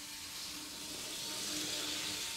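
Märklin HO model locomotive running along three-rail track: a faint, steady hiss of motor and wheels with a low hum, growing slightly louder as it comes past. This is a test run after the reversing unit's spring has been bent to increase its tension, so the loco should keep running under driving current instead of flipping to the switching position.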